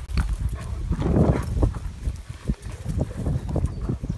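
A Great Dane breathing and snuffling close to the microphone as it plays, with irregular knocks and rustling, and a louder noisy burst about a second in.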